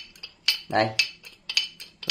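Sharp metallic clicks and clinks from a 14-inch Ampco bronze pipe wrench being handled: a handful of separate clicks, bunching together near the end.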